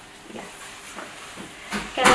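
Soft rustling and rubbing of a blood pressure cuff being handled and wrapped around an arm, a few brief brushing sounds about half a second apart.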